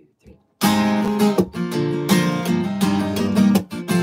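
Acoustic guitar strummed in chords, starting about half a second in right after a spoken count-in, opening a song's intro.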